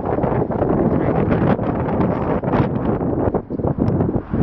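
Strong gusty wind buffeting the camera's microphone: a loud, uneven rumble that swells and dips with the gusts.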